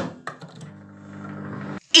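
Microwave oven running with a steady low hum, heating a plate of snow; the hum stops suddenly near the end.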